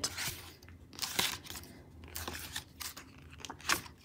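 Sheets of a sticker book being turned and handled: stiff paper and glossy sticker sheets rustling and crinkling in a string of short bursts.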